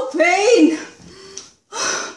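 A woman's voice in a short, untranscribed exclamation or laugh, then a sharp gasping breath near the end.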